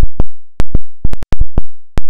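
Saramonic Blink500 wireless microphone system recording a chirping sound instead of audio. It is a loud run of sharp, irregularly spaced chirps, about eight in two seconds, each dying away quickly. This is the sign of its unreliable digital interface failing to pass the voice.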